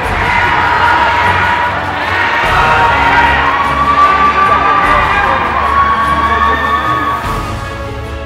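Large crowd of fans cheering and screaming, with shrill, drawn-out screams held above the din. It eases off slightly near the end.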